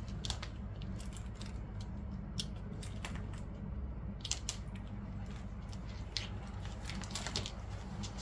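Scattered light clicks and rustling from handling a dog harness's fabric straps and buckles, over a steady low hum.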